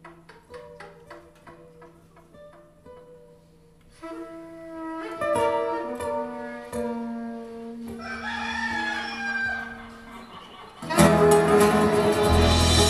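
Live acoustic ensemble music: acoustic guitars picking quiet single notes, then a soprano saxophone enters with held notes and a wavering, bending line over the guitars and percussion. Just before the end the whole band gets sharply louder.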